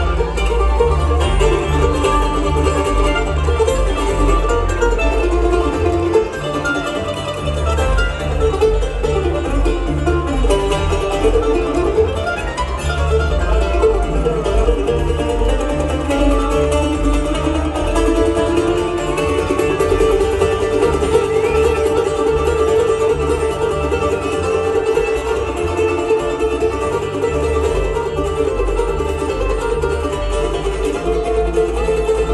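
Live bluegrass band playing an instrumental break: mandolin and banjo picking over acoustic guitar and a steady upright bass.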